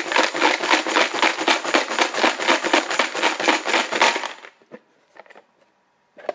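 Small plastic raffle chips rattling inside a plastic box shaken hard to mix them, a fast steady clatter that stops after about four and a half seconds, followed by a few light clicks.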